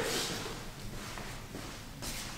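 Quiet room tone, with a faint echo dying away at the start.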